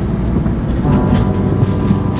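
Shinkansen bullet train in motion: a steady low rumble of the running train, with background music over it.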